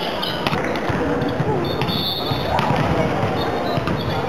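Volleyball players' voices and calls in a sports hall, with a few sharp thuds of the volleyball against the court or hands.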